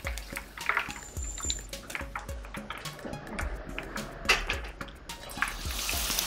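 Scattered light clicks and knocks of kitchen utensils against a wok as a fried fritter is lifted out, over faint sizzling of hot frying oil.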